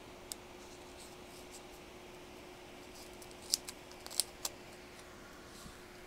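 Scissors cutting a tag off an electrical cord: one sharp snip near the start, then a quick cluster of about five snips around the middle, over a faint steady hum.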